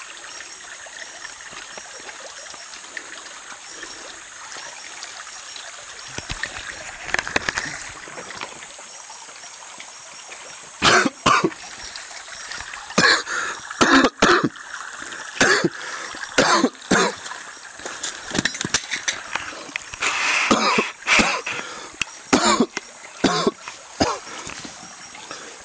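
A man drinking water straight from a freshly cut liana vine held upright, with water trickling from it. From about ten seconds in there is a string of short gulping and coughing sounds.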